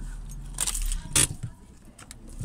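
Brief handling noise inside a car: a short high jingle about half a second in and a sharp click just after a second, over a low steady hum.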